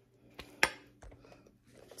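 Metal fork clinking against a bowl of mac and cheese: two sharp clinks close together about half a second in, then faint soft stirring sounds.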